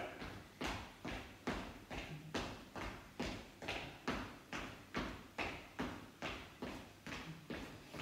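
Footsteps of people marching in place on a hard floor: an even run of soft thuds, about two to three a second, as they walk it out between exercises.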